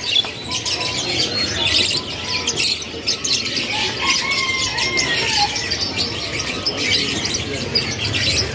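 Many caged birds chirping at once, a dense stream of short, high chirps with a few longer whistled notes around the middle.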